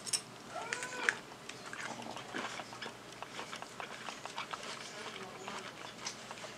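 A person chewing a mouthful of food, with soft wet mouth clicks throughout. About a second in, a brief pitched sound rises and falls.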